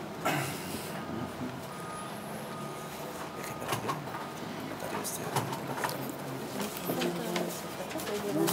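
Meeting-room ambience: low murmured voices that grow a little near the end, paper handling, and a few small clicks. A faint, broken high beeping tone runs through the first few seconds.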